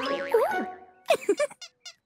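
Cartoon springy boing sound effects with swooping, wobbling glides in pitch. A cluster of them comes about a second in, then a few short quick chirps near the end, over light music.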